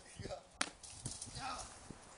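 One sharp knock about half a second in, fitting a jumper landing on the ground after leaping from the top of playground monkey bars, with faint voices around it.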